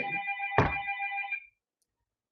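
A phone ringtone: a steady chord of held tones, with a single knock a little over half a second in. It cuts off suddenly about one and a half seconds in.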